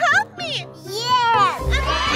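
A woman's and a child's voices exclaiming, with pitch sliding up and down, over background music. About a second and a half in, louder music with a deep bass comes in.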